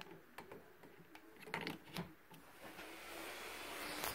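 A few clicks and knocks as a power plug is pushed into a wall outlet. Then, a little under three seconds in, the faint steady whir of the airblown inflatable's built-in blower fan starts up and slowly grows louder as it begins to inflate the figure.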